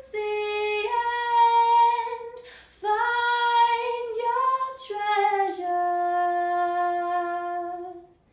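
A woman singing a slow melody unaccompanied, in long sustained notes with brief breaths between phrases, ending on one long held note through the second half.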